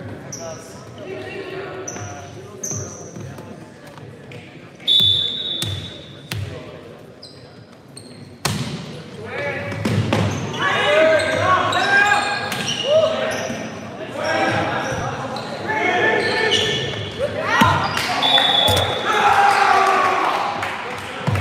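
Volleyball rally in an echoing gym: sharp smacks of the ball being hit and short high squeaks of sneakers on the hardwood floor, then from about eight seconds in many voices shouting over each other from the players and the sideline.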